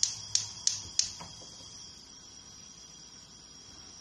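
Gas hob's electric spark igniter clicking about three times a second as the burner knob is held and turned, stopping about a second in. A faint steady hiss from the burner and the lidded pan follows.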